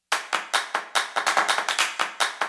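A fast run of sharp clap-like percussion hits, about five a second, starting abruptly. It is the opening beat of an electronic intro sting.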